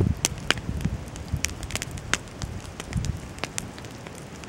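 Low, fluctuating rumble of wind on the microphone with irregular sharp ticks and clicks, several a second.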